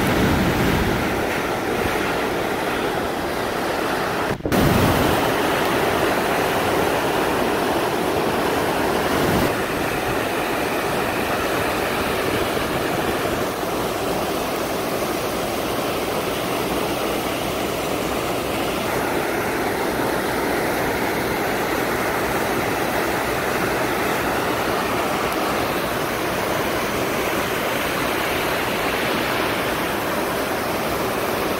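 Heavy river water rushing and churning through a dam's gate bays, a steady loud rush with a brief dropout about four seconds in.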